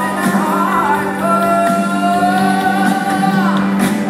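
A woman singing live with a pop band, holding one long note for about two seconds over a steady low chord from the band.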